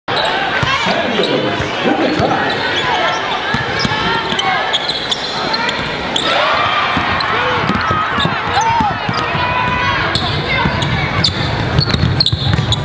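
Live basketball game sound in a large gym: many spectators' voices overlapping, with a basketball bouncing on the hardwood court.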